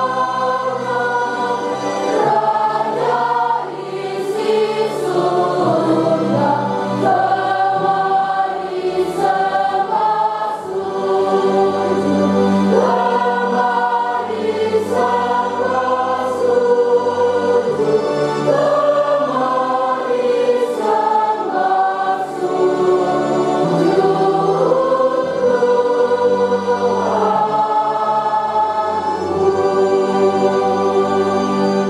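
Choir singing a hymn in a church, with sustained bass notes underneath that change every few seconds.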